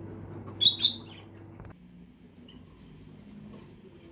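A bird gives two loud, high-pitched chirps in quick succession. A steady low hum stops suddenly a little later.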